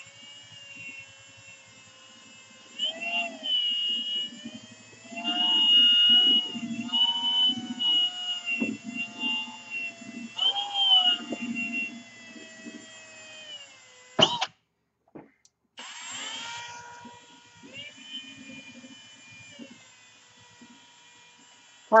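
Cordless drill spinning a buffing pad over fresh paint, its motor whine rising and falling in spurts as the trigger is worked. It cuts out briefly about halfway, then runs again and fades near the end.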